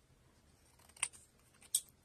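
Scissors snipping through a small paper card: two short cuts, a sharp click about halfway through and a brief, higher snip near the end.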